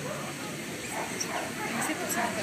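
Dogs barking over a steady murmur of crowd chatter, with short calls in the second half.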